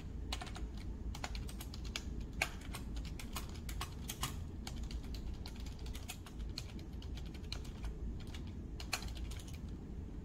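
Typing on a compact pink keyboard: quick, irregular key clicks throughout, over a steady low hum.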